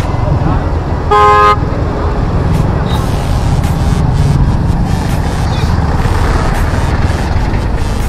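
A vehicle horn honks once, briefly, about a second in, over the steady low rumble of motorcycle riding noise in traffic.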